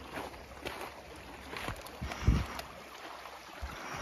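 Shallow creek water running over rocks, a steady faint rush, with a few light knocks and one dull low thump a little past halfway.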